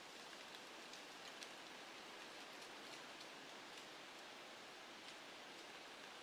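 Near silence: faint steady outdoor hiss with a scattering of faint, soft ticks.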